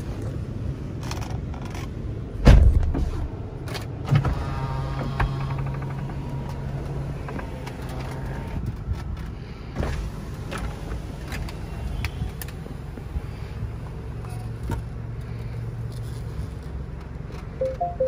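Electric soft top of a 2019 Mini Cooper Convertible retracting: a steady electric motor hum for about four seconds, a pause, then a second stretch of motor hum as the roof folds fully down. There is a thump about two and a half seconds in and a short two-note chime near the end.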